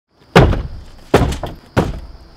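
Cardboard shipping boxes thudding down onto a stack, three heavy thuds, each with a short low boom after it.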